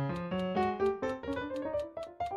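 Digital piano played in a fast atonal improvisation, a rapid run of separate notes at about six a second with both hands.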